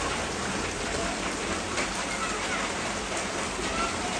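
Steady rain falling onto a waterlogged brick-paved street, an even, dense hiss of drops splashing into standing water.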